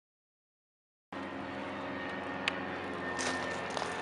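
Silence for about a second, then outdoor sound cuts in abruptly: a steady engine drone of even pitch, with a few small clicks.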